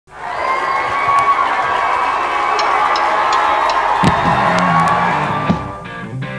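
Club crowd cheering and shouting loudly. About four seconds in, a rock band kicks in with a sharp drum hit and a sustained bass and electric guitar chord.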